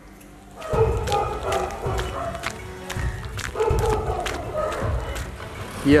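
Background music with a steady beat, starting just under a second in after a brief quiet moment.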